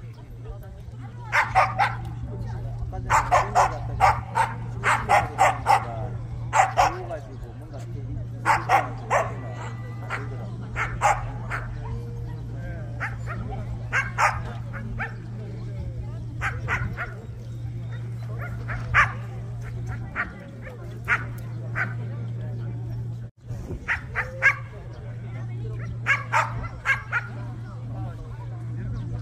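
Jindo dogs barking in repeated clusters of short, sharp barks and yips, over a steady low hum.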